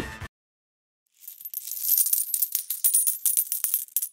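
Coins dropping into a glass jar: a run of many quick, bright metallic clinks that starts about a second in.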